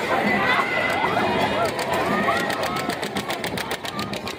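Chatter and raised voices of a carnival crowd, several people at once with no clear words. Near the end a rapid run of even clicks, about seven a second, joins in.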